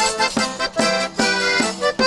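Accordion playing a lively Ukrainian folk-song accompaniment between sung verses, with chords changing in a steady rhythm.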